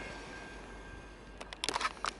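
Quiet background noise with a faint steady high hum, then a quick cluster of sharp clicks near the end.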